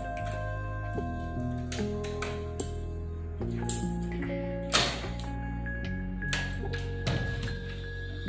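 Gentle background music with slow held notes, over several sharp metallic clicks of a key turning in a door lock, the loudest a little past halfway.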